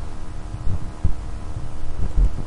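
Low, irregular thumps over a steady electrical hum, the kind of handling or breath noise a handheld microphone picks up.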